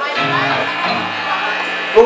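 Electric guitars played live through amplifiers, with held notes ringing on.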